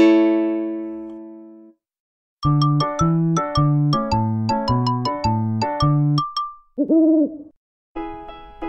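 A sustained chord rings out and fades, then after a short pause a brief jingle of quick, bright keyboard notes plays, followed near the end by a single owl-like hoot.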